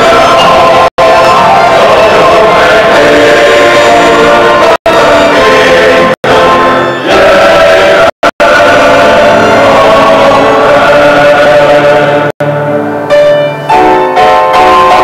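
Men's choir singing in sustained chords. The sound drops out for an instant about six times, and the phrase tapers off to quieter, lower notes near the end.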